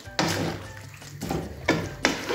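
Wooden spoon stirring chicken and vegetables in a thick sauce in a wok, scraping against the pan, with a sharp knock of the spoon on the wok just after the start and another near the end.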